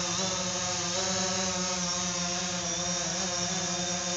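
DJI Phantom 4 Pro quadcopter hovering, its propellers giving a steady buzzing whine made of several held tones.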